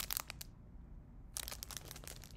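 Clear plastic packaging crinkling and rustling as it is handled and pulled open. There are two bursts of crinkling with a short quieter gap between them.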